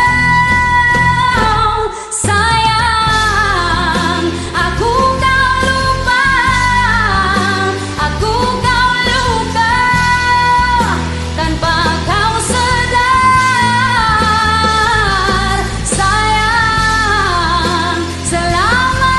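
A woman singing long held and sliding notes over a karaoke backing track of a pop-rock ballad, with a steady bass line underneath.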